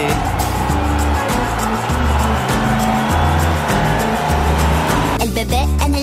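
Instrumental music with a steady bass beat, overlaid with a car sound effect, a noisy rush of engine and tyres that cuts off suddenly about five seconds in.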